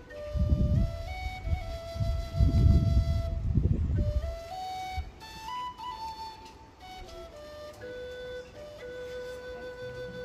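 Background music: a slow flute melody of long held notes that step up and down. Low rumbling sits under it in the first half.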